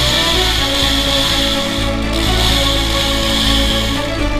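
Background music with a chainsaw cutting mixed in over it; the saw's noise breaks off briefly about halfway through.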